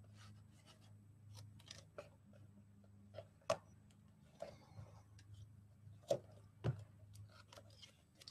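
Faint handling of double-sided tape and cardstock: tape pulled off its roll, torn and pressed onto paper flaps, with soft rustles and a few sharp clicks, the loudest about three and a half seconds in and two more between six and seven seconds in. A low steady hum runs underneath.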